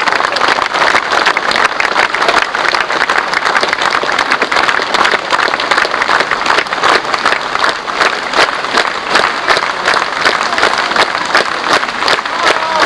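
A large outdoor audience applauding, the claps becoming more distinct and evenly spaced in the second half, like clapping in time.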